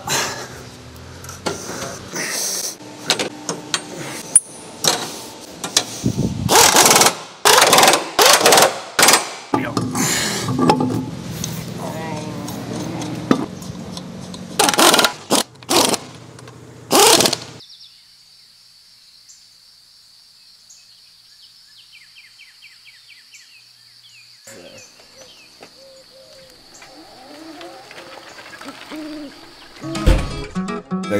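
Pneumatic impact wrench rattling in repeated short bursts as it runs lug nuts onto a wheel. After about 17 seconds the bursts stop and a quieter stretch follows with a steady high-pitched whine.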